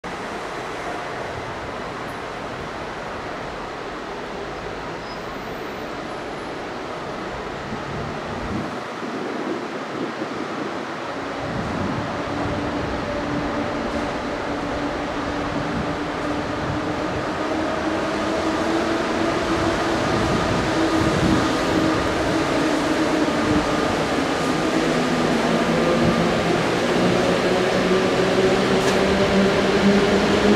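EU07 electric locomotive hauling a passenger train: a steady mechanical hum at first, then after about twelve seconds a whine that rises slowly in pitch and grows louder as the train gathers speed.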